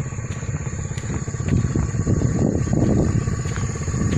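Small motorcycle engine running at low revs with an even pulse, growing louder and rougher around the middle.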